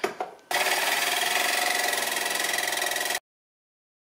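Corded jigsaw cutting through a thin sheet-metal panel: a few light clicks, then about half a second in the saw starts with a steady, loud rasp as the blade goes through the metal. The sound cuts off suddenly nearly a second before the end.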